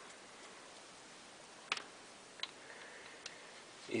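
A screwdriver turning out the screws of a chainsaw carburetor's bottom cover, making three faint, sparse clicks, the loudest a little under two seconds in.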